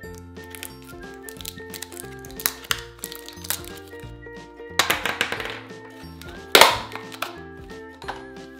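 Light background music, over hands opening a clear plastic toy capsule: a few small plastic clicks, a stretch of crackling plastic near the middle, and one sharp plastic snap about two-thirds of the way through, the loudest sound.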